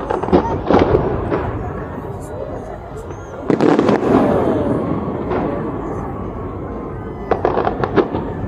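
Fireworks display: sharp bangs and pops over a continuous rumble of bursts, with a big loud burst about three and a half seconds in that dies away slowly, and a quick cluster of bangs near the end.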